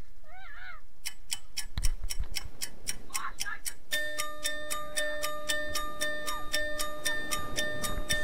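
Fast, even ticking clicks, about four or five a second. About halfway through they are joined by a steady electronic tone that repeats in short regular pulses, like a ticking-clock music loop.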